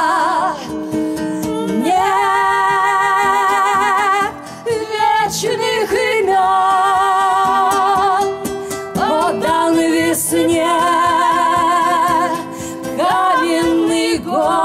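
Two women singing long held notes in harmony, with vibrato, over acoustic guitar and acoustic bass guitar.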